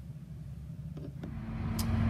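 Low background rumble that grows louder, with a steady hum coming in about a second in.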